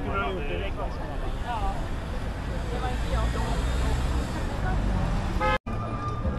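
Busy city-street sound at a crosswalk: a steady low rumble of traffic with passers-by talking. Near the end there is a short pitched toot like a car horn, then the sound cuts out for an instant.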